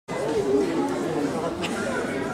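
Indistinct chatter of several voices, echoing a little in a large hall.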